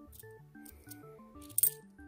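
Background music with a stepping melody, over which 50p coins clink together several times as they are sorted in the hand, the sharpest clink about three-quarters of the way through.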